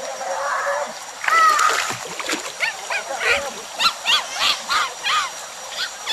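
A run of short, high, rising-and-falling animal calls, repeated about two or three times a second, beginning about a second in and stopping near the end, over a steady wash of water noise.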